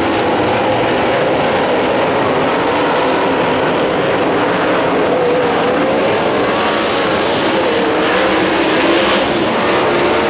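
Engines of a pack of wingless open-wheel dirt-track race cars running hard together, loud and steady, their pitches wavering up and down as the cars go through the turns.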